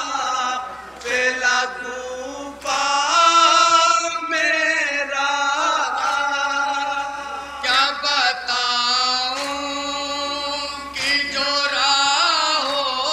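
A group of men chanting a mourning noha in unison, unaccompanied, following a lead reciter at a microphone, with long held and wavering notes.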